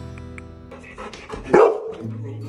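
A golden retriever barks once, loudly, about one and a half seconds in, over background music.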